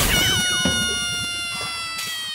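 Final chord of a brass fanfare intro sting hits and rings out, slowly fading and sagging slightly in pitch, with a quick downward slide in one voice right at the start.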